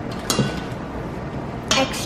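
A plastic measuring cup knocks against a stainless steel mixing bowl about a third of a second in, a short clink with a brief ring. A short vocal sound follows near the end.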